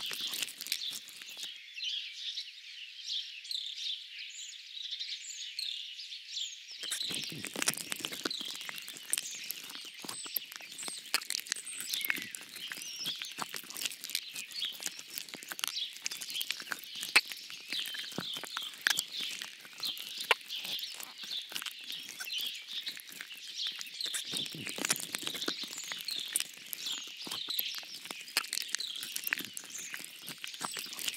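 A dense chorus of small songbirds chirping and singing, with many short calls overlapping without a break, and scattered sharp ticks among them.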